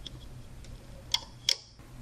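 Two short, sharp clicks about a third of a second apart from rubber bands and fingers working on a plastic Rainbow Loom's pegs, over a faint low hum.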